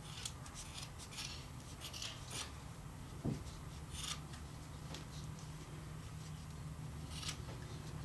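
Scissors snipping through yarn, trimming a pompom: a quick run of short, crisp snips in the first two or three seconds, then single cuts now and then. A soft low thump about three seconds in.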